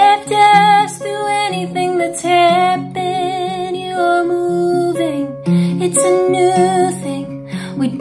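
A woman singing a slow song with vibrato on held notes, over a guitar accompaniment.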